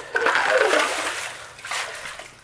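Ice-auger bit worked up and down in a freshly drilled hole through lake ice, splashing and sloshing the water and slush as the hole is cleared. The splashing is loudest at first and dies away.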